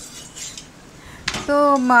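A metal spatula scraping and clinking against a flat griddle (tawa) while rotis are turned, with one sharp clink a little over a second in.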